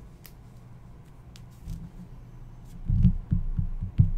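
Hands on a tabletop handling hard plastic card holders: a few light clicks, then a run of dull low thumps about three seconds in.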